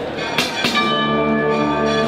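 A wind band playing a processional march, with sustained brass and woodwind chords. Two sharp percussion strikes come in quick succession about half a second in.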